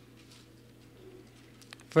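Quiet room tone with a low, steady electrical hum through the pulpit microphone, a few faint clicks just before the end, then a man's voice begins speaking right at the close.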